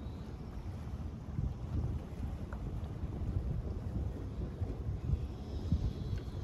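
Wind buffeting a microphone outdoors, a low, uneven rumble that gusts up and down.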